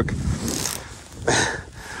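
Rustling and handling noise close to the microphone as a fly rod is drawn from a chest holster. There is a low rumble at first and two short breathy puffs, the second about a second and a half in.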